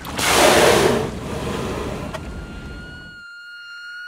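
Title-card transition sound effect: a noise whoosh that hits at once and fades away over about three seconds, under a steady high held tone with overtones that lasts through the whole card.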